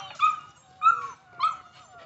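Pit bull terrier puppy whining: three short, high whimpers, each sliding down in pitch, about two-thirds of a second apart.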